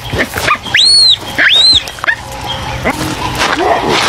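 A young baboon giving high-pitched distress calls while caught in a struggle: two loud shrill calls about a second in, each rising and then falling, followed by quieter, shorter cries and a lower call near the end.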